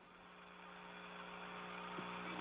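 Faint steady electrical hum with a few fixed tones and a light hiss on the communications audio feed, slowly growing a little louder.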